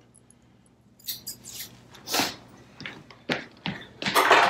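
Quilt-top fabric rustling and swishing in several short bursts as it is handled and shifted over the quilt batting, starting about a second in and loudest about halfway through.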